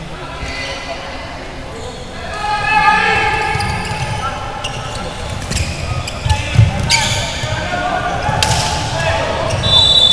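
Floorball game in a large indoor hall: players shouting and calling out, with sharp knocks of sticks and the plastic ball, the loudest a couple of knocks around the middle. A steady high tone starts near the end.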